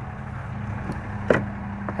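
Steady low hum of the truck's 6.7-liter Cummins diesel idling, heard from inside the cab, with one sharp click a little past halfway as the rear seat cushion is flipped up to uncover the load floor.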